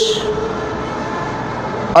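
Steady background hiss and hum of the room in a pause between a man's spoken phrases, with the tail of his last word at the very start.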